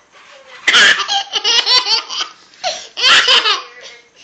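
Baby laughing hard in two bursts of rapid, high-pitched laughter, the first about a second in and the second near three seconds.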